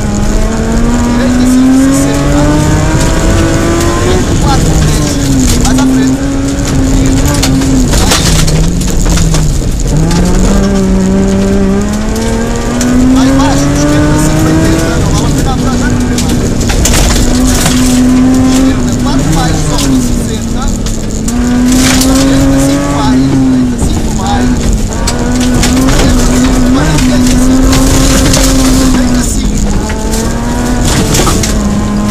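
Rally car engine revving hard through the gears on a gravel stage, heard from inside the cabin. The pitch climbs and drops back at each gear change, over a constant rumble of tyres on gravel and sharp clicks of stones striking the car.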